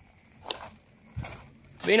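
Mostly quiet, with one sharp click about half a second in and a soft thump a little past the middle; a voice begins right at the end.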